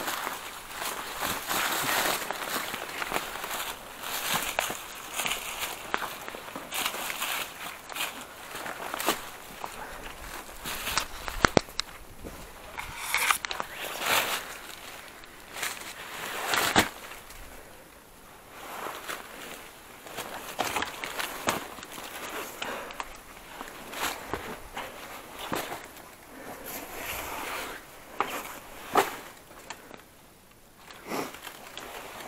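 Footsteps through dense, dry brush, with bare branches and twigs rustling, scraping and snapping as they are pushed aside, in irregular bursts and a few sharp cracks.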